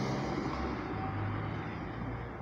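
Street traffic: a steady, low motor-vehicle engine rumble.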